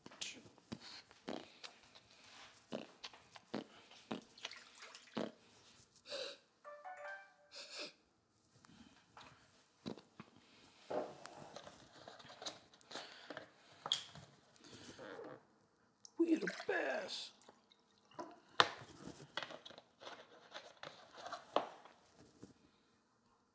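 Handling sounds of a drinking glass and a plastic gallon water jug: a string of light knocks and clicks as they are picked up, set down and the cap opened, then water poured from the jug into the glass with a rising glug about two-thirds of the way through.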